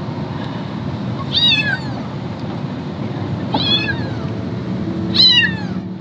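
Cats meowing three times from inside a moving car, each a high cry that falls in pitch, over steady road noise.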